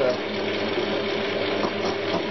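CQ9325 metal lathe running steadily, its spindle turning a steel bar held in a fixed steady, with a steady hum and a held tone from the motor and drive.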